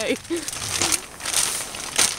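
A plastic bag of marshmallows crinkling as it is handled, the rustle strongest in the second half.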